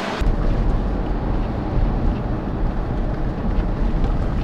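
Steady low rumble of engine and road noise inside an SUV's cabin while it drives.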